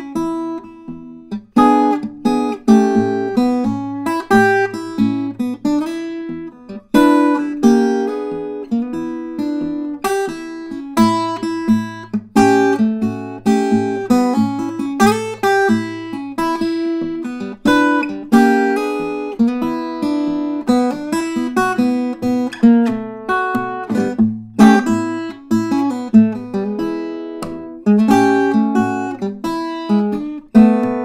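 Flat-top acoustic guitar played fingerstyle: a 12-bar blues chorus in E, short single-note licks answered by sharp chord hits, with bass notes under parts of it.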